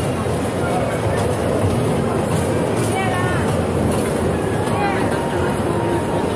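A running children's carousel with the steady low rumble of its turning and the crowd noise around it. Children's voices mix in, with a couple of short high calls about three and five seconds in.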